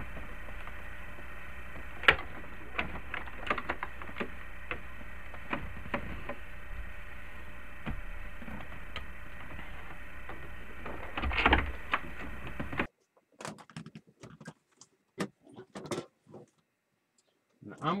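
Hand tools working loose the plastic dash of a Jeep Cherokee XJ, with a driver on a buried screw and trim being pulled free: scattered sharp clicks and knocks over a steady background noise. About 13 seconds in, the background drops away and only a few light clicks and taps remain.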